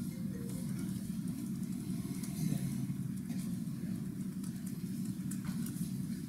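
Steady low rumble of room background noise, with a few faint clicks of laptop keys being typed.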